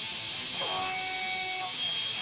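Noise-rock recording: a harsh, distorted electric guitar wash, with several held feedback-like tones ringing over it in the middle of the stretch.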